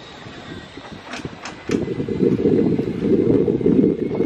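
Wind buffeting the camera's microphone: a low rumble that gets much louder a little under two seconds in.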